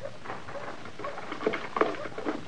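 Radio-drama sound effects: a run of light clicks, taps and rustles, with two sharper clicks near the end.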